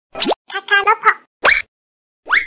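Animated logo sound effects: a quick rising pop, then a short chirpy voice-like sound, then another rising pop.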